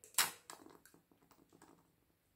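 Handling noise from gloved hands at a work table: a short rustling scrape just after the start, then light taps and rustles that die away.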